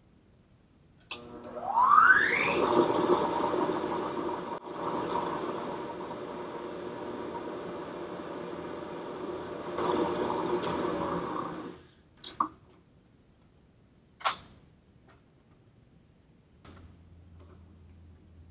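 Vertical milling machine's spindle motor switched on with a click, its whine rising as it spins up, then running steadily for about ten seconds before stopping. Two sharp clicks follow.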